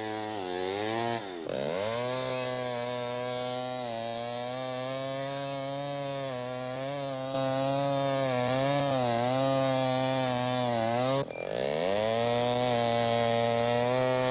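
Gasoline chainsaw cutting into the trunk of a dead tree, running steadily at high revs. Its engine pitch dips and recovers twice, about a second and a half in and again near the end, as the saw bogs under load.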